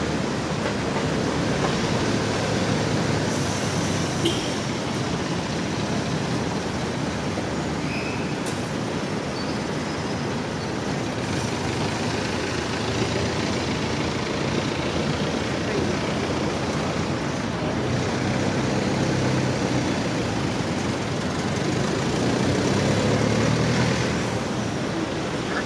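Steady traffic noise from cars, vans and motorcycles on a busy city avenue, growing louder near the end as an engine passes close by.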